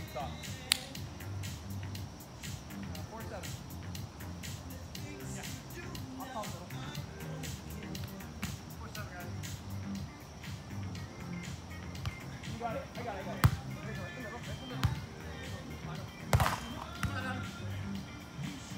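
Music plays steadily in the background with faint voices, broken by sharp smacks of hands hitting a volleyball: one a little under a second in, then three within the last five seconds as a rally gets going, the first of these the loudest.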